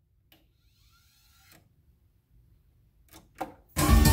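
Revox B790 linear-tracking turntable changing track: faint clicks and a soft rising motor whir as the tonearm lifts and travels across the record, then two louder clicks as the stylus sets down, and music from the record starts just before the end.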